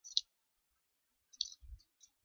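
Computer mouse clicking: a couple of short, sharp clicks right at the start and a few more about a second and a half in, with faint low thumps alongside them.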